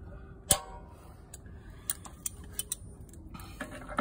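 A sharp metallic click about half a second in, then a scatter of lighter clicks and taps, from the hot water heater's brass pressure relief valve lever and a socket wrench being handled.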